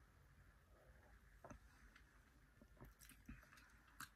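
Near silence as a drink is sipped from an aluminium can, with a few faint soft clicks of swallowing and the can's handling about one and a half seconds in and again near the end.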